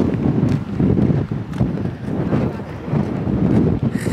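Wind buffeting the microphone: a loud, gusting low rumble that rises and falls unevenly.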